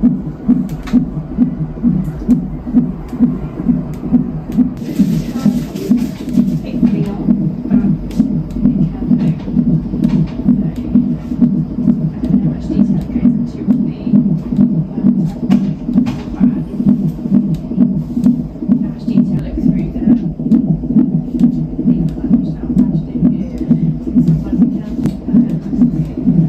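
A baby's heartbeat in the womb, played through the speaker of a Huntleigh CTG fetal monitor: a steady rhythmic pulse of about two beats a second, around 130 beats per minute.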